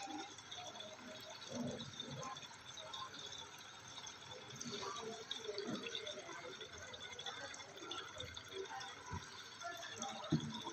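Newborn baby sucking and swallowing fluid from an oral syringe: faint, irregular sucking sounds.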